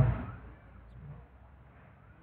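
The trailing end of a man's spoken word fading out in the first half second, then faint steady room noise with a low hum.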